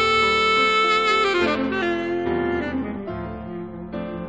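Jazz tenor saxophone and piano: the saxophone holds a long, bright note over sustained piano chords, then drops to a few lower, shorter notes about a second and a half in while the piano keeps ringing.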